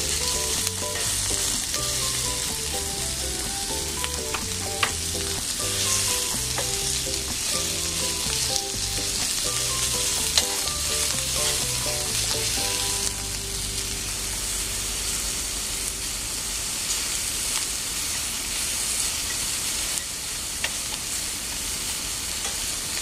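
Chicken pieces sizzling steadily in hot oil in a hammered iron frying pan, turned with metal tongs that click against the pan a couple of times.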